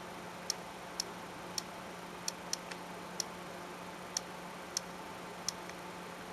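Typing on an iPod touch's on-screen keyboard: about ten short, sharp clicks at an uneven pace, one per key press, over a faint steady hum.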